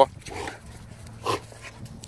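A Belgian Malinois gives a single short bark about a second in.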